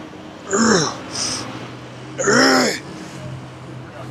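A man's two strained grunts of effort during a dumbbell curl set, about two seconds apart, with a sharp hissing breath between them.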